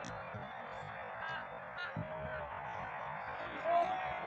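Faint, distant shouts of footballers calling across an outdoor pitch, a few short calls over a steady low rumble of background noise.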